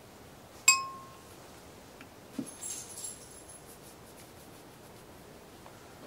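A single sharp metallic clink with a short ring about two-thirds of a second in. It is followed around two and a half seconds in by a softer knock and a light metallic rattle lasting about a second. These are small steel pistol parts clinking together as they are handled during cleaning.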